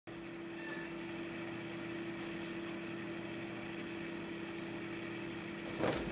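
A steady low mechanical hum with one clear, unchanging tone, and a short thump just before the end.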